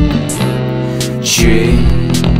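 Instrumental passage of an indie rock song: sustained electric guitar and bass chords with regular drum strikes, the chords shifting about halfway through.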